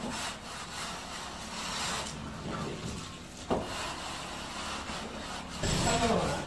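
A straight-edge scraped across fresh, rough cement plaster on a block wall: a continuous gritty rubbing, with a single sharp knock about three and a half seconds in.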